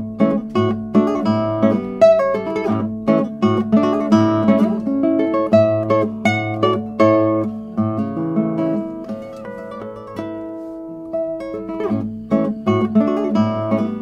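Classical guitar by Michael Ritchie played fingerstyle: a flowing, unbroken run of arpeggiated plucked notes that ring into one another over a low bass note that keeps coming back.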